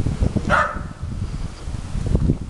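A dog barks once, a short bark about half a second in, over a low rumble of wind buffeting the microphone.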